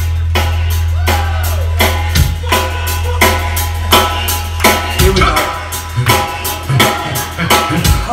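Live ska band playing: the drum kit keeps a steady beat of about two hits a second under guitar, keyboard and horn parts. A deep bass note is held for the first two seconds or so before the bass line moves on.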